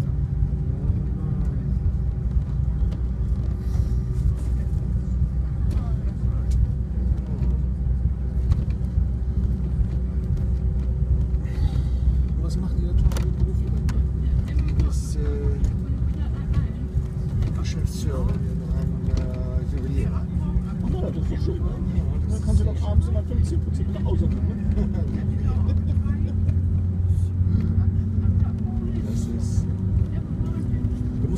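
Airliner cabin noise on the ground: a steady low jet-engine hum with a drone that rises slightly in pitch over the last ten seconds or so. Faint passenger chatter sits underneath.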